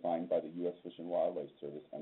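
A man's voice speaking continuously in a lecture, heard over a narrow-band recording that cuts off the high end.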